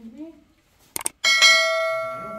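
Subscribe-button sound effect: a quick mouse click about a second in, then a bright bell ding that rings and fades away.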